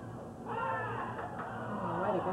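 A high-pitched voice calls out once, beginning about half a second in and lasting about half a second, its pitch rising and falling. A faint click follows about a second in.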